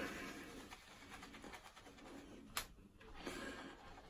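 A boar-bristle shaving brush being worked over shaving soap to load it: faint, soft rubbing and swishing, with one brief sharp click about two and a half seconds in.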